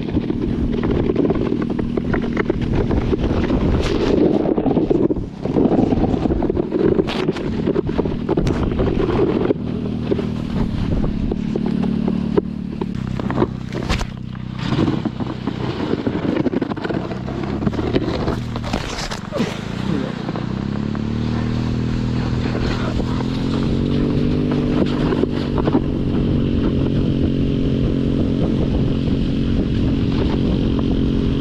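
Small single-cylinder go-kart engine towing a kneeboard over snow. For the first ten seconds it is mixed with a rush of wind and snow; a stretch of knocks and scrapes follows mid-way. From about twenty seconds in, the engine's pitch rises as it accelerates and then holds steady.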